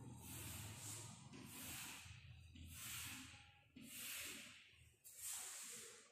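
Chalk scraping on a blackboard as long straight lines are drawn: about five faint, hissy strokes roughly a second apart, over a low steady hum.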